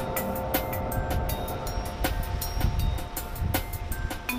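Background music with a quick, steady beat and held notes, over a low rumble underneath.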